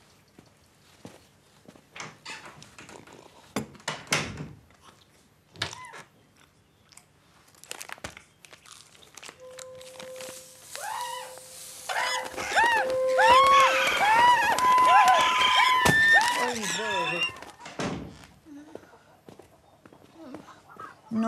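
Chickens squawking, many overlapping calls loudest in the second half. Before them come scattered knocks, and a steady tone sounds under the start of the squawking.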